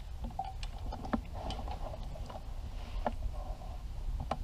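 Low rumble with a few faint scattered clicks: handling noise from a hand-held camera being moved.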